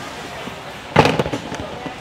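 A clear plastic storage bin is set back onto a stack of plastic bins, giving one short, loud plastic clatter about halfway through, over the steady background noise of a large warehouse store.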